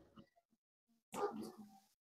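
Near silence, broken about a second in by one short, faint breath-like sound from the man at the microphone.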